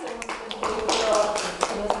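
A woman speaking Japanese into a microphone, with several light, sharp taps among her words.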